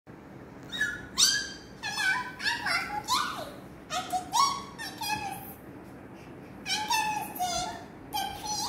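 Quick runs of short, very high-pitched, meow-like vocal calls that slide up and down in pitch, breaking off for about a second and a half around the middle before starting again.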